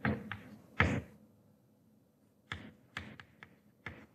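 Chalk writing on a blackboard: a series of sharp taps and short scratches, a cluster in the first second and another in the second half.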